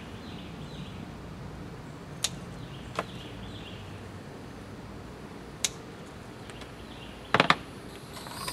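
Hand pruning shears snipping through tomato stems: single sharp snips about two, three and five and a half seconds in, then a quick double snip near the end.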